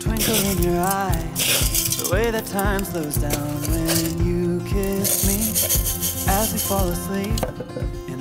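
Fine gravel poured from a zinc bucket onto a plant pot as a mulch layer, small stones trickling and clinking in a few short pours, over a background pop song with a singing voice.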